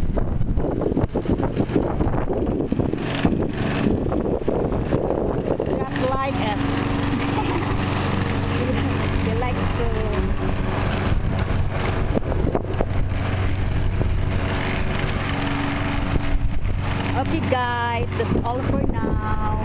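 Stiga walk-behind lawn mower's engine running steadily while mowing grass, with wind buffeting the microphone. The engine's steady hum comes through more clearly from about six seconds in.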